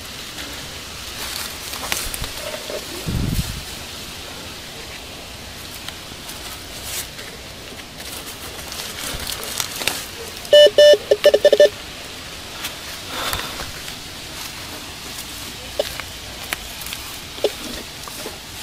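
Metal detector giving a quick run of about six short, high beeps about ten seconds in as its search coil is passed over loosened dirt, signalling a metal target just under the coil. Scraping and rustling of the coil and glove in the soil and grass run throughout.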